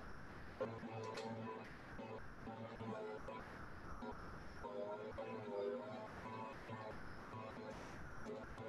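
Faint, low voices in the background of an otherwise quiet room; the flour being poured makes no clearly audible sound.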